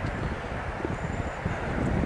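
Wind buffeting the microphone: an uneven low rumble under a steady hiss.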